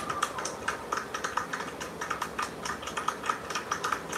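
Crowd applauding, with individual hand claps standing out as sharp, irregular cracks several times a second.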